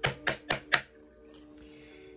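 Four sharp clicks of tarot cards being handled and snapped down in quick succession within the first second, then faint background music with held tones.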